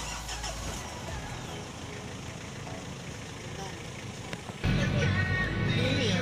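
Quiet outdoor background, then about four and a half seconds in a sudden jump to the louder sound of riding in a vehicle, engine and road rumble under background music.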